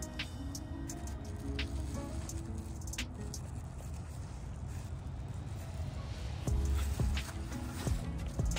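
Background music over a low rumble, with a few faint clicks as an adhesive protective strip is pressed onto the rim of a plastic wheel cover.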